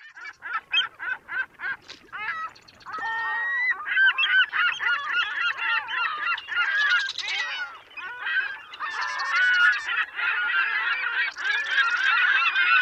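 A flock of black-headed gulls calling. It opens with a quick run of short calls, about four a second, then from about three seconds in many overlapping calls from several birds at once.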